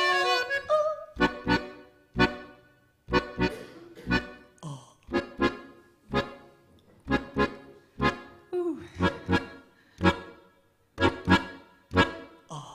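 Piano accordion playing an instrumental passage of short, detached chords in small groups, with brief silent gaps between them.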